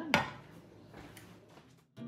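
A single sharp knock of a wooden spatula against a skillet of gravy, ringing briefly, followed by faint room sound that cuts off just before the end.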